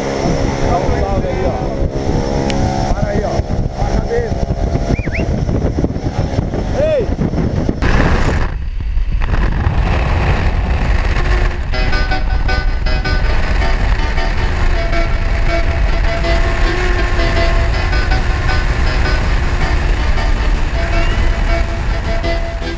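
Single-engine propeller plane running, with voices over it at first; after a cut, a loud steady rush of wind and engine through the aircraft's open jump door in flight, with music coming in about twelve seconds in.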